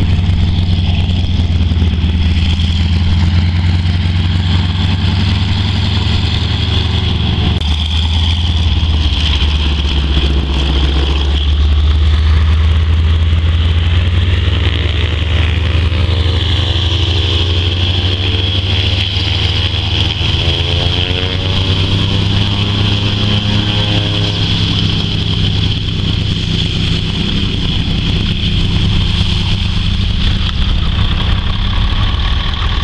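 A PZL M-18 Dromader's nine-cylinder radial engine running on the ground, with a heavy diesel fire-truck engine idling close by. The mix stays steady and loud, with a faint sweeping tone rising and falling through the middle as the aircraft moves.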